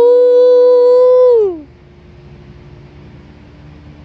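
A girl's long, loud held "moo" call in imitation of a cow. It rises in pitch at the start, holds one steady note for about a second and a half, then falls away.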